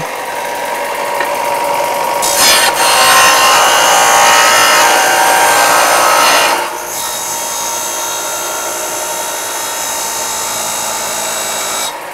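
Eastwood 4-inch belt / 6-inch disc bench sander running. From about two seconds in until past six seconds, a metal plate is pressed against the spinning sanding disc to grind a bevel, adding a loud, harsh sanding noise; after that the machine runs free with a steady hum.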